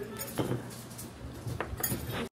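Cutlery and dishes clinking at a dining table: a few short sharp clinks, one about half a second in and two close together near the end.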